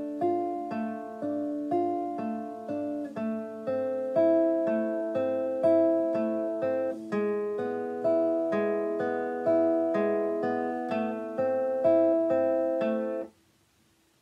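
Nylon-string classical guitar played fingerstyle: an even arpeggio with thumb, index and middle fingers on the G, B and high E strings over held chord shapes that change each bar, about two notes a second. The strings are damped by the hand near the end, cutting the sound off suddenly.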